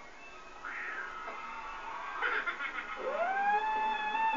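Television broadcast audio heard through the TV set's speaker: short wavering pitched sounds, then about three seconds in a long pitched note that glides up and holds as music begins.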